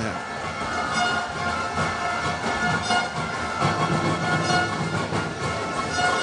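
Football stadium crowd noise, with several horns blowing long, steady notes at once over the crowd throughout.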